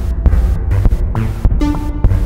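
Experimental electronic music from an Emona TIMS module rack patched as a drum machine, triggering an Akai synthesizer's arpeggio. A heavy low throbbing pulse with sharp clicky hits runs under short synth notes that step from pitch to pitch.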